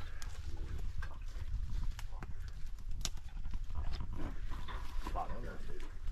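Amphibious ATV engine running at idle, a steady low hum with scattered light clicks and knocks over it.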